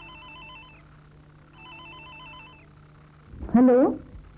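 Electronic telephone ringer with a warbling trill, ringing twice, each ring about a second long. A voice answers near the end.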